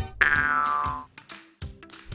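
Cartoon sound effect in an intro jingle: a falling boing-like glide that starts just after the music cuts and slides down in pitch for most of a second, then fades to near quiet with a few faint short notes.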